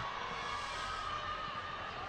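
Quiet open-air ambience at a football pitch: a steady low rumble and hiss with a faint held tone and no distinct events.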